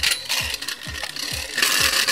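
A metal-rimmed toy battle top is launched with a sharp release click and spins on a small plastic handheld arena, rattling and clinking against the plastic. The scraping hiss grows louder near the end.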